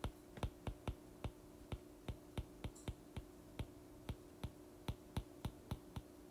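Stylus tip tapping on an iPad's glass screen during handwriting: a string of sharp, irregular clicks, about four a second, over a faint steady hum.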